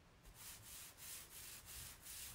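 Hands rubbing an adhesive silk-screen transfer back and forth on a fabric mat, faint strokes about three a second: fuzzing the transfer with lint to dull its stickiness.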